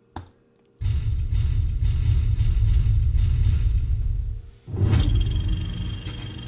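Deep cinematic rumble from a movie trailer's opening, starting about a second in and lasting several seconds. A second low hit follows near the end and fades.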